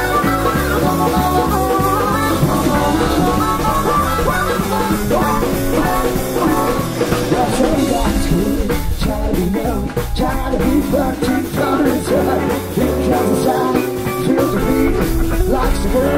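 Live blues-rock band playing a loud, steady instrumental passage: electric guitar with bending notes over bass guitar and a drum kit.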